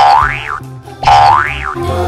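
A comedy boing sound effect played twice, about a second apart, each a springy tone that rises in pitch and then drops back, over background music.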